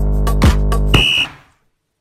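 Electronic workout music with a steady beat. About a second in, a single short high electronic beep sounds, the kind an interval timer gives to mark the end of a work period, and the music breaks off.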